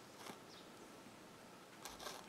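Near silence: room tone, with two faint brief clicks, one early and one near the end.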